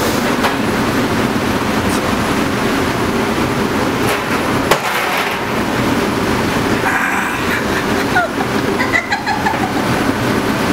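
Steady loud roar of a commercial kitchen's exhaust hood fan, with a few small knocks scattered through it.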